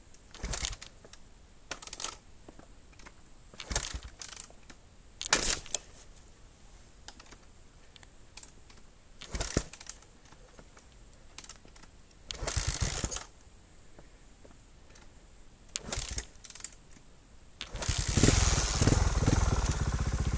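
Short, scattered crunches and rustles in dry grass and brush. Near the end a stalled trials motorcycle's engine starts and keeps running, loud and steady.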